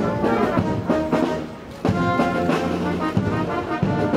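Military brass band playing, trumpets, trombones and tuba sounding held notes in phrases; the playing drops briefly a little before two seconds in, then a new phrase comes in loud.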